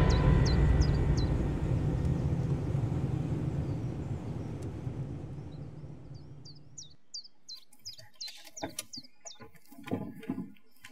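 Birds chirping in quick, short calls, a few at first and then several a second in the last few seconds, with a few light clicks among them. Underneath, the low tail of dramatic background music dies away over the first seven seconds.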